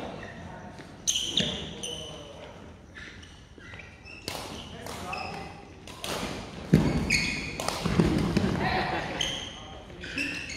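Badminton rackets hitting the shuttlecock in a doubles rally, a series of sharp hits about a second apart with the loudest just before seven seconds in, echoing in the hall among players' voices.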